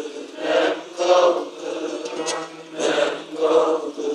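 A man singing a Turkish folk song in phrases that rise and fall, with a bağlama (long-necked Turkish lute) accompanying him.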